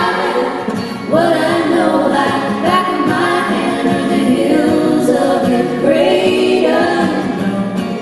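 Three women singing close harmony in long held notes over a strummed acoustic guitar, in a live performance.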